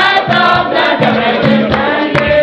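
A Spiritual Baptist congregation singing a hymn together in many voices, over a steady beat of sharp strokes.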